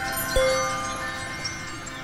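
Chime tones ringing and slowly dying away, with one more note struck about a third of a second in.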